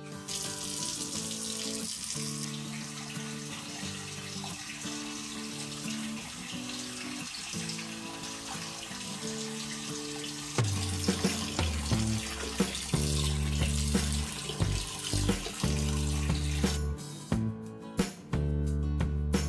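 Tap water pouring in a steady stream into a stainless-steel kitchen sink, filling the basin. It cuts off near the end. Background music plays throughout.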